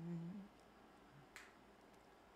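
A man's a cappella sung note, held and ending within the first half second, then near silence with one sharp click about a second and a half in.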